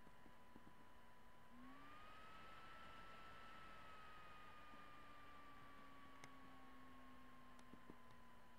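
Near silence: faint background hiss with a faint steady electronic whine, whose pitch rises slightly about a second and a half in and then slowly sinks back. A few faint clicks are heard, twice close together near the end.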